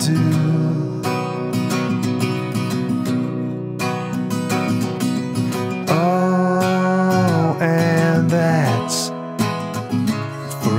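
Acoustic guitar strummed in a song's instrumental passage, with a long held melody note from about six seconds in.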